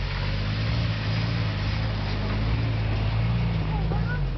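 Jeep Wrangler engine running steadily at low revs, a low drone that rises and falls a little.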